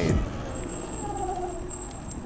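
E-Ride Pro SS electric dirt bike riding along, its motor giving a faint whine that falls slowly in pitch about a second in, over a low rumble of wind and tyre noise on the mounted camera's microphone.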